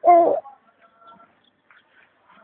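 A child's short, loud vocal exclamation right at the start, lasting under half a second, followed by only faint background sounds.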